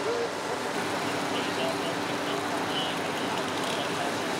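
Steady drone of fire-truck diesel engines running at the fire scene.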